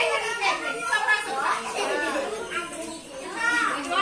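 Young children's voices talking and calling out over one another, a steady playground chatter.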